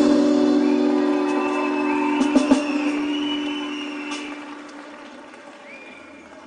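A live band's final chord held and ringing out, fading steadily over several seconds as a song ends. A few high whistles rise over the fading chord, one about two seconds in and another near the end.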